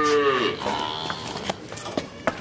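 Water buffalo lowing: one drawn-out call that falls in pitch and fades about half a second in, followed by a fainter, higher call.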